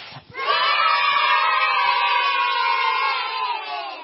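A group of children cheering and shouting together in one long held cheer. It starts about half a second in, sinks slightly in pitch and fades out near the end.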